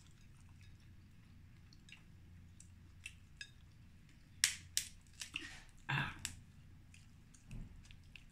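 Close-up eating sounds of king crab leg meat: scattered short wet mouth clicks, smacks and chewing, mostly from about three seconds in, over a faint low hum.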